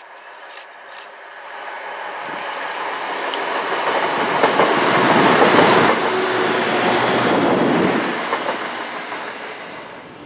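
Passenger multiple unit passing on the rails at line speed: its running noise builds as it approaches, peaks about five to six seconds in as it goes by, then fades as it draws away.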